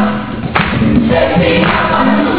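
Gospel music with a choir singing held notes over accompaniment, a strong beat landing about once a second.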